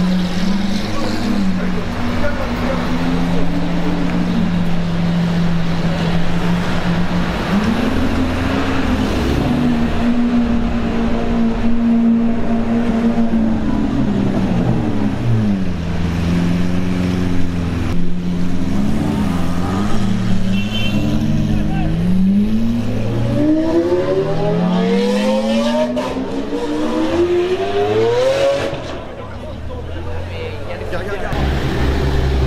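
Lamborghini Aventador V12 engines revving as supercars crawl past, the pitch jumping up and down with throttle blips. Near the end come several long rising revs as cars accelerate away.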